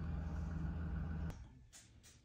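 Engine of a large vehicle running steadily outside, heard through a closed door; it cuts off abruptly just past a second in, leaving faint room sound.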